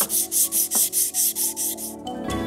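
400-grit abrasive paper on a hand sanding block, scrubbed back and forth over a metal plate: a rhythmic scratchy hiss of about five strokes a second. This is hand-sanding the metal surface to remove the previous grit's scratches before engraving.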